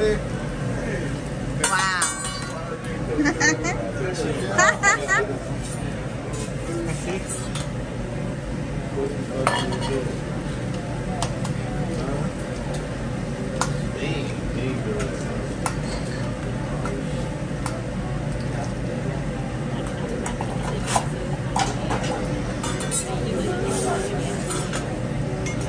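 Metal spatula clinking and scraping on a steel teppanyaki griddle. A cluster of louder ringing clanks comes in the first five seconds, then single sharp clinks are spread out through the rest.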